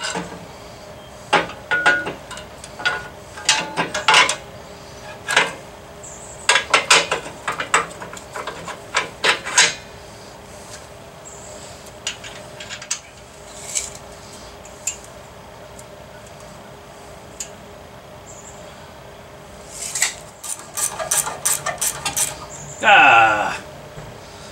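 Steel suspension parts and a hand wrench clinking and knocking as a lower control arm and tension control rod are fitted together on a Datsun front suspension, in scattered clusters of short metallic clicks with a quieter stretch in the middle. Near the end comes a brief, louder sound with a wavering pitch.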